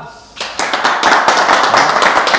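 A small group of people clapping their hands together in applause, starting suddenly about half a second in and running on as a steady patter of many quick claps.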